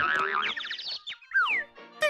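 Cartoon boing sound effect of a coiled spring wobbling after a spring-loaded boxing glove shoots out of a gift box, a warbling tone with a couple of falling glides about one and a half seconds in, over cartoon music.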